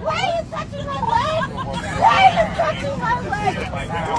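Several people talking over one another in an airliner cabin, none clearly, over the plane's steady low cabin hum.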